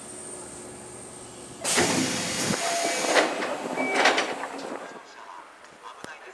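Keio train's sliding doors opening at the platform: a sudden loud hiss of air about two seconds in that lasts about three seconds, with a few short tones mixed in, over a lower steady train sound before it.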